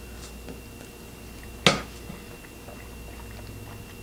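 A person quietly chewing a mouthful of soft cooked pasta shells in cheese sauce, with one sharp click a little under two seconds in.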